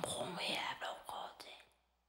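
Whispered voice repeating rhythmic nonsense syllables, fading and ending about one and a half seconds in.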